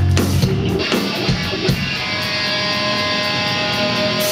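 Hardcore band playing live, loud and distorted: the heavy full-band part with cymbals breaks off within the first second, leaving electric guitar ringing on held notes with a few low hits.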